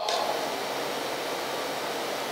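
Steady, even hiss of background room noise, with no other sound standing out.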